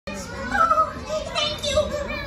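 Young children's high-pitched voices calling out, with no clear words.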